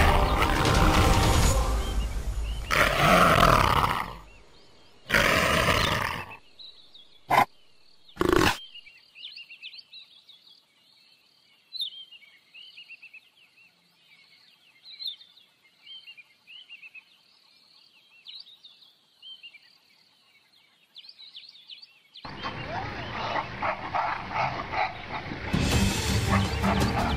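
Two loud wild-animal calls, each about a second long with sweeping pitch, a few seconds in, then two short sharp sounds. After that, faint high chirping of birds or insects for most of the time. A loud dense sound starts again about four seconds before the end.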